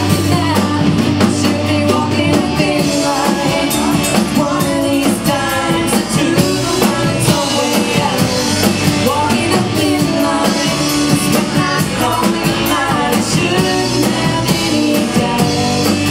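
Live country band playing: a woman singing lead over electric and acoustic guitars, bass and drums.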